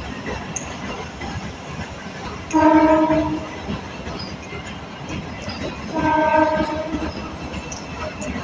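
Indian Railways passenger coaches running past on the track with a steady rumble. Twice, a steady train horn sounds, each blast lasting about a second, the two about three and a half seconds apart.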